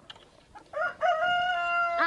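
Rooster crowing close by: a short opening note about two-thirds of a second in, then one long level held note.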